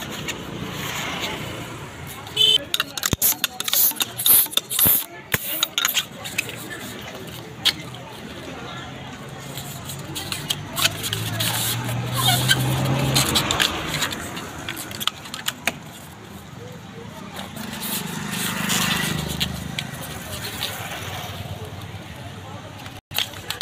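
Latex twisting balloons squeaking and rubbing as they are twisted into a figure by hand, with a cluster of loud, sharp squeaks a few seconds in and fainter ones later, over background voices.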